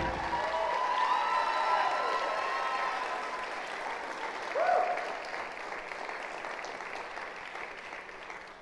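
Audience applause that slowly dies away, with a few voices calling out over it, one louder call about four and a half seconds in.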